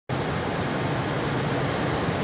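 A John Deere cotton picker running steadily as it harvests, a constant dense machine noise over a low engine hum.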